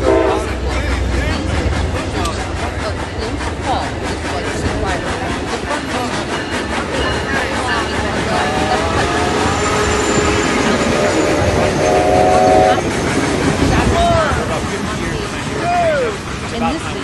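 Several overlapping train soundtracks: the steady rumble and wheel clatter of passing trains, with voices talking underneath. A train horn chord sounds for about a second near the end.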